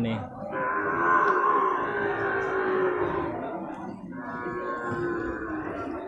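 Young water buffalo calling with two long moos, the first about three and a half seconds long, the second shorter and starting about four seconds in.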